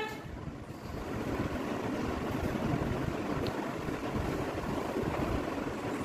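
Steady low rumble and hiss of background noise, with no distinct event.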